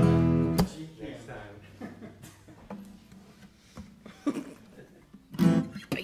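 Acoustic guitar and bass guitar sounding a short chord that is cut off about half a second in, the low bass note ringing on for a couple of seconds, with laughter over the start and light, scattered guitar sounds after.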